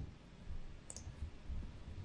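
A single faint, sharp click from the computer's mouse or keyboard about a second in, over low room noise.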